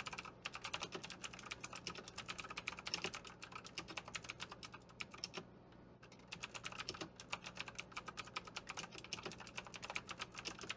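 Fast typing on an EagleTec KG010 mechanical keyboard with Outemu Blue switches (Cherry MX Blue clones): each keystroke gives a sharp click from the switch's tactile bump, in a dense, uneven run that stops briefly about halfway through.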